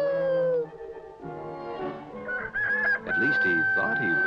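A cartoon rooster's crow ends in a long note that slides down in pitch and stops about half a second in. Soundtrack music follows, with a held high note from about three seconds in.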